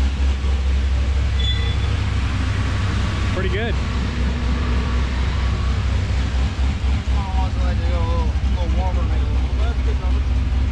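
C6 Corvette's V8 idling steadily on a chassis dyno between pulls, a low even rumble. People talk faintly over it.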